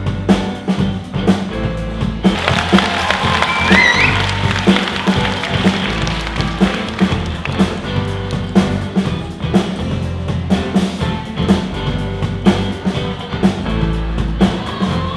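A live band plays upbeat rock music with a steady drum beat, guitar and keyboard.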